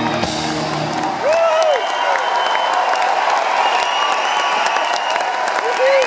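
A live rock band's closing chord cuts off about a second in, giving way to audience applause and cheering with shrill whistles.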